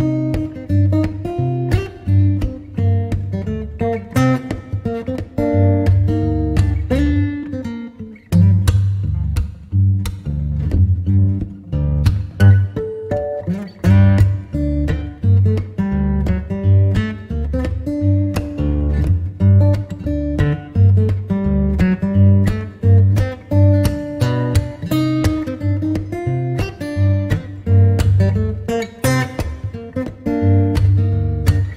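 Background music: acoustic guitar playing steady strummed and plucked chords.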